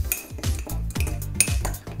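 A metal teaspoon stirring a crumbly dry cake mix in a ceramic mug, with quick, irregular clinks and scrapes of the spoon against the mug's sides and bottom.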